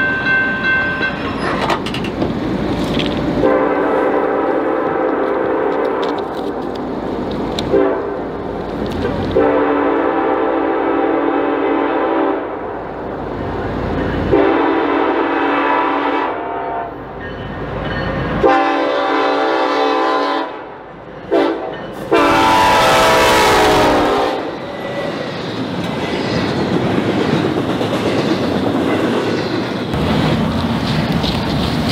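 Freight train's locomotive air horn sounding a run of long blasts with a short one near the end, the final long blast the loudest, as the train nears the crossing. Then comes the rolling noise of the double-stack cars passing.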